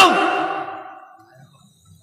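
A man's voice through a public-address system, trailing off at the end of a loudly spoken word and fading away over about a second, followed by a brief near-silent pause.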